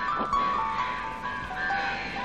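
Film background music: a high melody of long held notes stepping from one pitch to the next.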